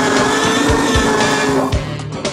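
A long, drawn-out dinosaur roar sound effect over music with a thumping beat. The roar cuts off near the end.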